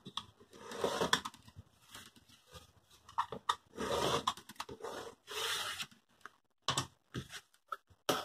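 Rotary cutter slicing through layered cotton fabric along a ruler on a cutting mat, in several short rasping strokes, with a few light clicks and knocks near the end.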